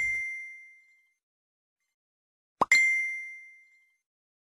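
Two bell-like dings, each one clear high tone that rings and fades over about a second. The first rings out at the start; the second is struck sharply about two and a half seconds in, with dead silence between them.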